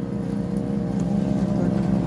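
Steady low machine hum made of several even tones, with a faint regular throb underneath.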